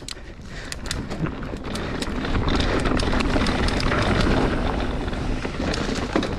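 Mountain bike rolling fast down a dirt singletrack: wind rushing over the helmet-camera microphone and tyres on dirt, with rattles and clicks from the bike, growing louder over the first couple of seconds as it picks up speed.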